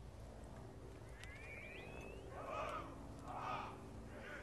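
Quiet outdoor lull with a brief bird chirp, gliding up and down, just over a second in. Then two loud, harsh calls about a second apart in the second half.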